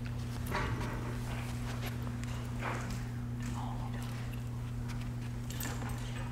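A few soft, irregular footsteps and handling knocks, spread a second or two apart, over a steady low electrical hum.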